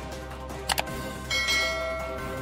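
A quick double mouse click, then a bright notification-bell chime ringing over steady background music.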